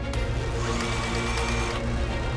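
Stitch Master sewing machine running steadily as it stitches a hem through heavy fabric, with background music over it.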